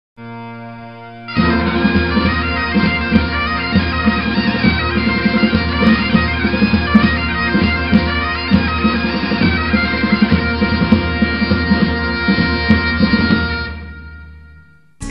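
Scottish bagpipes playing a tune over their steady drones. A quieter drone sounds alone for about a second before the full pipes come in, and the tune fades out near the end.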